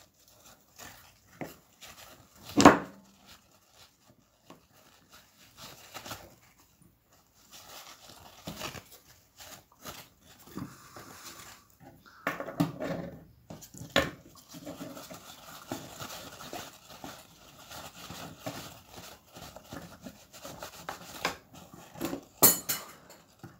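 Paper towel rubbing over a small painted metal model plow, with light clicks and knocks of the parts in the hands; the rubbing grows denser in the second half. One louder sharp sound comes nearly three seconds in.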